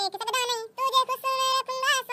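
A high-pitched sung vocal in short phrases, holding notes and bending between them, with brief breaks.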